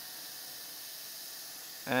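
A steady, even hiss with no speech.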